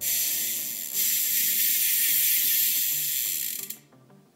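Zipp rear hub's freehub buzzing as the wheel is spun: the pawls ratchet rapidly over the hub's teeth in a continuous high-pitched zing. It starts suddenly, gets louder about a second in and fades out near the end as the wheel slows. This is the hub's baseline noise with its old, dirty lubrication, before any cleaning or re-oiling.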